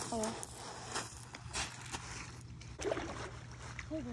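Footsteps crunching on a gravel shore, then water sloshing as a channel catfish is let go back into the lake in the shallows, with a couple of short voice sounds.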